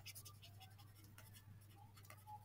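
Faint scratching and tapping of a stylus on a tablet screen as a word is handwritten, in short strokes over a low steady hum.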